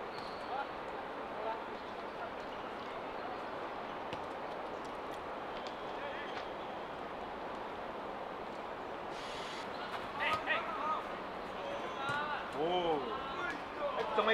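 Steady outdoor background noise, with football players shouting and calling to each other across the pitch about ten seconds in and again near the end.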